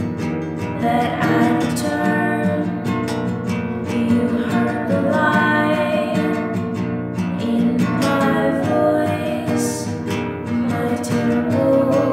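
Indie song with acoustic guitar and a sung vocal melody.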